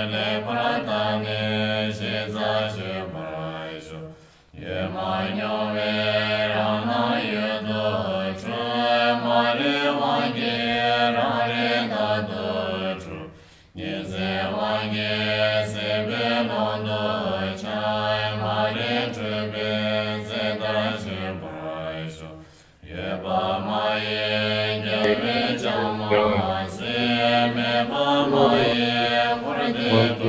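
Tibetan Buddhist chanting of prayer verses in Tibetan, a low, steady voice sung in long phrases with short breaks about 4, 13 and 23 seconds in.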